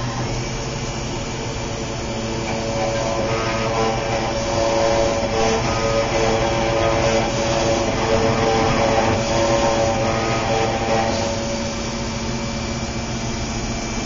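New Hermes Vanguard 9000 rotary engraving machine running a test job: a steady motor whine from the spinning spindle as the cutter engraves a plate, with the nose's vacuum pickup running. It grows a little louder through the middle and eases near the end. The cutter depth is set to 10 thousandths on the micrometer for this pass.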